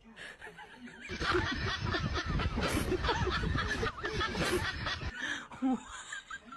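People laughing hard over a loud low rumble that cuts off abruptly about five seconds in.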